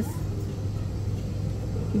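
Steady low hum and rumble of shop background noise, without speech.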